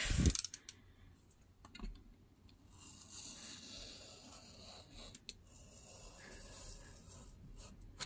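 A few clicks from the slider of a snap-off utility knife as the blade is set, then a faint, scratchy hiss of the blade drawn along a ruler through paper and washi tape for about five seconds.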